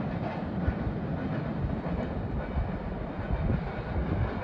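Empty coal hopper cars of a fast freight train rolling past at speed: a steady rumble of steel wheels on rail, with many light clacks running through it.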